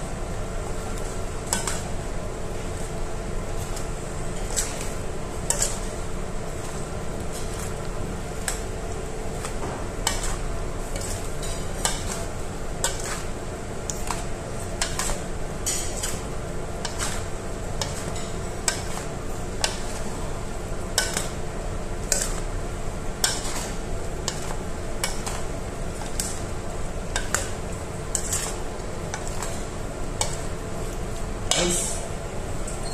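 A metal spoon and a wooden spatula tossing dressed cucumber salad in a stainless steel mixing bowl: the spoon scrapes and clinks against the bowl in irregular sharp knocks, roughly one every second or so, over a steady background hum.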